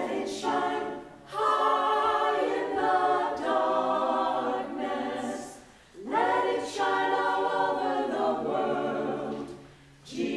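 Church choir singing together in sustained phrases, with brief breaks about a second in and just before six seconds.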